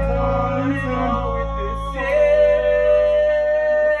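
Live rock band playing, with male voices singing long held notes over sustained electric guitar and bass, like a song's final chord. It cuts off sharply right at the end.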